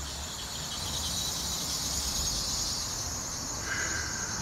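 Outdoor ambience: a steady high-pitched hiss over a low rumble, with a short higher tone near the end.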